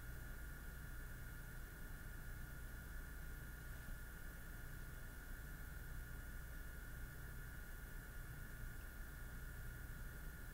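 Faint, steady room tone: a low hum and hiss with a thin steady high tone, and no distinct events.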